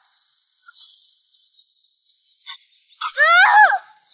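Fight-scene sound effects: a faint airy whoosh, a short click about two and a half seconds in, then a loud, wavering, pitched cry of under a second near the end.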